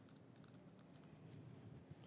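Faint typing on a laptop keyboard, a few light key clicks, against quiet room tone.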